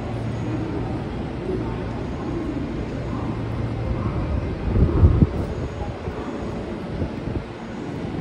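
Station platform ambience beside a standing JR West 207 series electric train: a steady low hum from the idle train, with a short cluster of low thumps about five seconds in.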